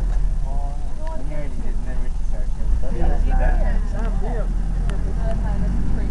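An open safari vehicle driving on a bush track, its engine and movement making a steady low rumble.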